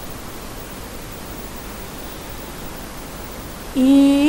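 Steady, even hiss of background noise in a pause between phrases of a chanted Quran recitation. Near the end a voice comes back in on a long held note.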